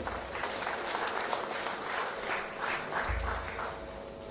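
Audience applauding, fairly faint, thinning out near the end.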